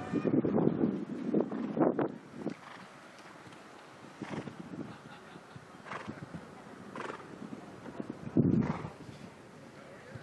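A show-jumping horse's hooves striking the turf at a canter, about one stride a second. There is a loud rush of noise in the first two seconds and another short loud burst about eight and a half seconds in.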